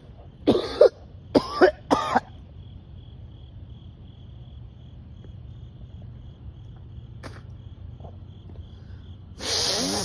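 A man coughing three times in quick succession, with a longer cough near the end. Behind the coughs run a steady, pulsing high trill of crickets and a low rumble.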